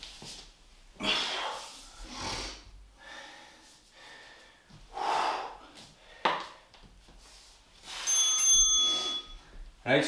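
A man breathing hard after an exercise set, with loud exhalations every one to two seconds. About eight seconds in, a short electronic timer beep marks the start of the next work interval.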